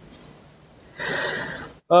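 A man taking a quick, audible breath in close to the microphone, lasting just under a second about halfway through, after a second of faint room hiss.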